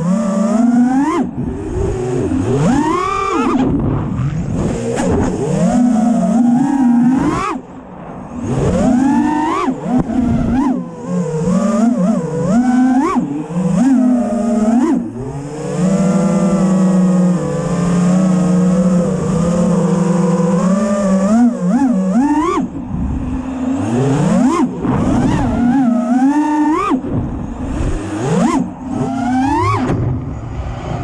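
FPV racing quadcopter's brushless motors whining, the pitch swooping up and down with the throttle and holding steady for a few seconds about halfway through.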